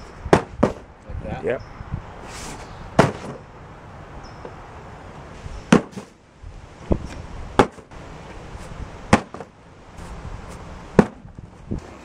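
Packed cardboard shipping box dropped about a metre onto a concrete patio again and again: a series of sharp thuds, roughly one every one to three seconds, about eight in all.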